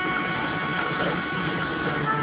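Music playing on a car radio, with long held notes over a steady hiss of background noise.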